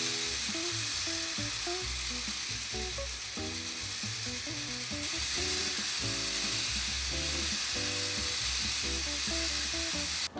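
Small electric motor and plastic gears of a DIY circular knitting machine running, a steady hissing whir, under background music.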